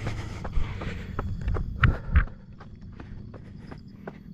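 A runner's footfalls on a gravelly dirt road, about three strides a second, growing fainter about two seconds in.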